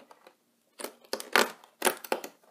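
Cardboard advent calendar door being pried and torn open, jammed by a large item behind it: after a short quiet moment, a few brief tearing, scraping bursts.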